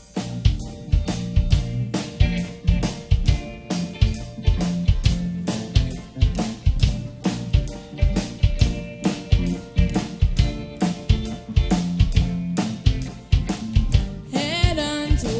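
Live band playing the instrumental intro of a pop song: electric keyboard chords over a steady drum-kit beat with snare, kick drum and cymbals, no vocals yet.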